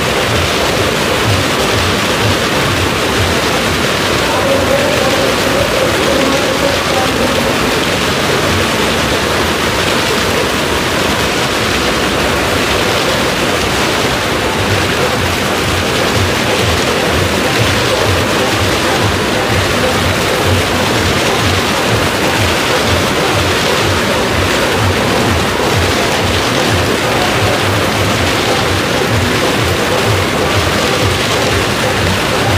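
Maruti 800 cars with three-cylinder petrol engines driving flat out around the vertical wooden wall of a well of death: a loud, continuous noise of engines and tyres on the planks, echoing in the enclosed drum, with no break.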